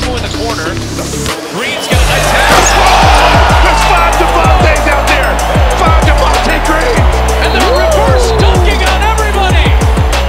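Background music with a heavy bass beat. The bass cuts out briefly about a second and a half in, then returns louder. Underneath it is arena game audio with a cheering crowd.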